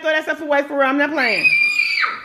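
Voices talking, then a girl's long, high-pitched scream that starts just after a second in.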